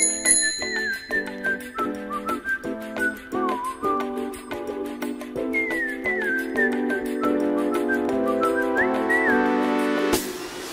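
Background music: a whistled melody over a steady, rhythmic chordal accompaniment, opening with a short high chime.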